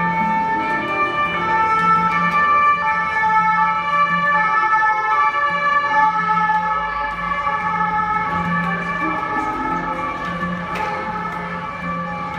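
Handpan (steel hand-pan drum) played with the hands: struck notes ring long and overlap into a sustained, bell-like wash over a steady low note.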